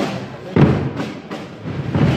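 Holy Week procession drums (tambores and bombos) beating a slow march. Heavy bass-drum strokes fall right at the start and again about half a second in, with lighter drum strokes between them.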